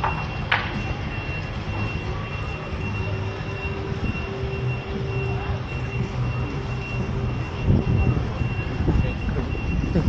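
Street traffic: a vehicle's engine running low, with a rapid, even, high-pitched beeping like a reversing alarm that stops near the end.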